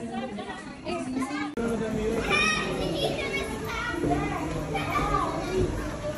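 Children's high-pitched voices calling out at play, without clear words, with a brief dropout about a second and a half in.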